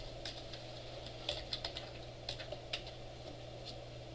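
Computer keyboard typing: a dozen or so scattered keystrokes in short runs, over a steady low hum.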